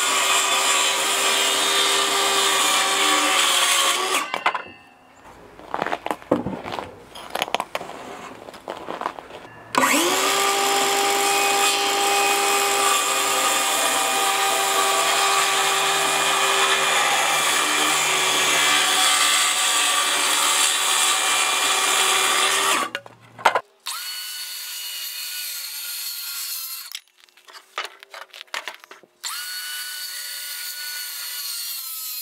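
DeWalt cordless circular saw cutting rough-sawn lumber: a cut of about four seconds, then a few seconds of boards and tools being knocked about, then a longer cut of about fourteen seconds that begins with the motor spinning up and stops suddenly. A quieter, steady machine whine follows near the end.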